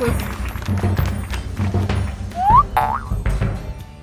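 Cartoon background music with a steady low beat, and about two and a half seconds in a short rising cartoon sound effect, a quick upward glide in pitch like a boing.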